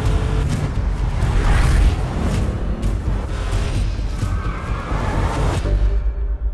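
Advertisement soundtrack of music mixed with car sound effects: a deep rumbling engine and whooshes. Near the end it cuts abruptly to a pulsing bass beat.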